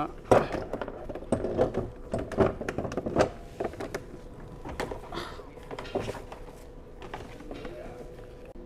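Plastic knocks and clunks from the HiClean HC50B floor scrubber's brush deck as a scrub brush is pushed and turned underneath to engage its latch. A quick run of sharp knocks comes in the first few seconds, then more scattered ones.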